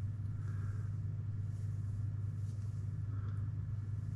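A steady low background hum, with faint soft rustles about half a second in and again about three seconds in.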